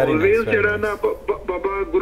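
Speech only: a caller's voice coming over a telephone line, thin and cut off above the voice's upper range, talking without pause.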